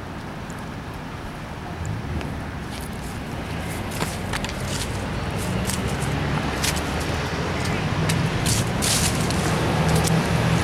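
Street traffic: a motor vehicle's engine hum drawing closer and growing steadily louder toward the end, with a few scattered sharp clicks.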